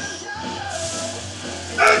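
Music playing, with a lifter's short, loud grunt of effort near the end while pressing a heavy chain-loaded barbell from the floor.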